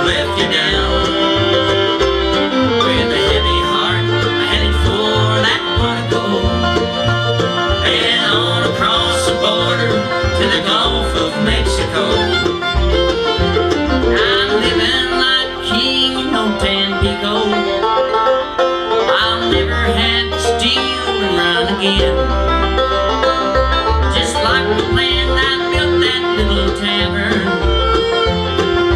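Bluegrass band playing an instrumental break live on banjo, fiddle, mandolin, two acoustic guitars and upright bass, with no singing.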